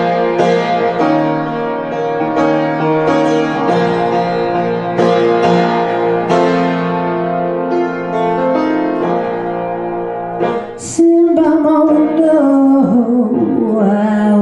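Piano playing a slow blues, with chords struck every half second to a second and left ringing. About eleven seconds in, a woman's voice comes in over the piano, holding a long wavering note.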